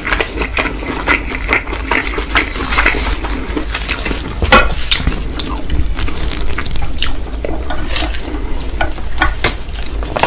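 Close-miked chewing of Indomie Mi Goreng fried instant noodles: wet, sticky mouth sounds with many small clicks throughout, and one louder click about four and a half seconds in.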